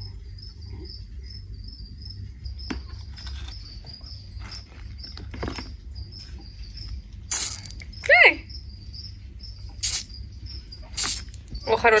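A cricket chirping steadily in a high, evenly pulsed trill, about three pulses a second. A few brief rustles of dry leaf litter come through it as a hand reaches into the enclosure.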